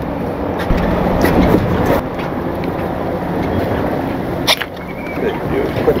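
Boat engine idling under steady wind and water noise, with a few short sharp knocks and clicks, the sharpest about four and a half seconds in.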